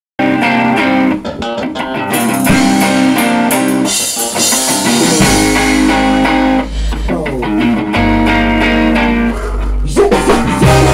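Rock band playing: electric guitar with drums, and a deep bass line coming in about five seconds in.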